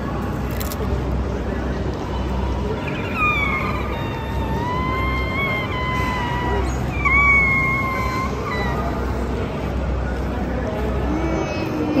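A woman's high-pitched closed-mouth "mmm" of delight while chewing a mouthful of food: two long, wavering hums, the second shorter, over a steady low background hum.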